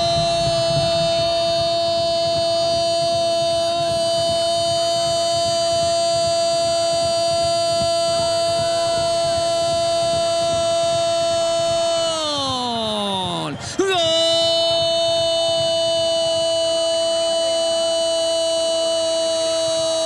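A sports commentator's long, drawn-out goal cry held on one high note for about twelve seconds, then sliding down in pitch as his breath runs out. After a quick breath a second long held note follows.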